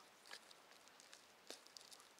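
Near silence, with a few faint light rustles and ticks of potting compost and a plastic plant pot being handled: once about a third of a second in and twice near the end.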